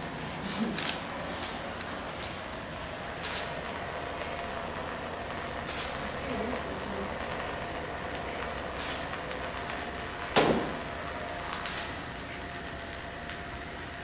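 Homemade motorized art-making machine running with a steady hum and a faint whine, with scattered clicks and one louder knock about ten and a half seconds in.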